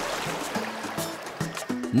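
Background music with a watery splashing sound effect that fades away during the first second.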